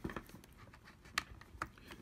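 A few faint, sharp clicks and light handling noise, the clearest click about a second in, as a USB cable's plug is handled beside a laptop.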